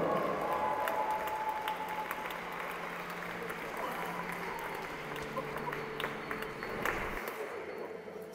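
Crowd applauding in an ice arena, a dense steady clatter of clapping that thins and fades away near the end.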